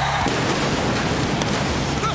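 Stage pyrotechnics going off: a sudden blast at the start, then dense crackling with a few sharp bangs.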